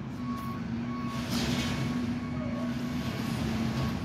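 Vehicle reversing alarm beeping at an even pace, a single high tone repeated roughly every two-thirds of a second, over the low running hum of an engine.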